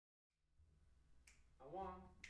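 A finger snap about a second in, then a voice counting off "One," to start the band, over a low steady hum.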